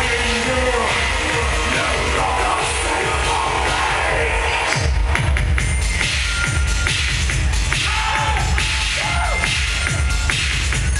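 Loud live electronic music with a heavy bass beat played through a venue PA. About five seconds in the dense sound thins out, leaving pounding bass strokes and a few held synth tones.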